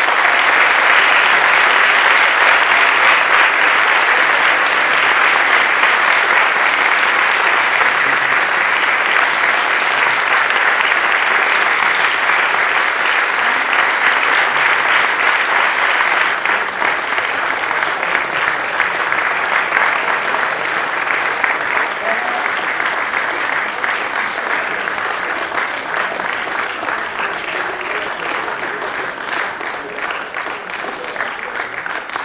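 Audience applauding in a hall at the end of a performance, a dense sustained clapping that eases off gradually over the second half.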